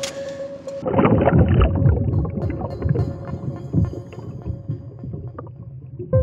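Muffled underwater sound of water churning and bubbling around the sonar as it goes into the lake, loudest from about one to three seconds in, then settling. A steady held music note runs underneath.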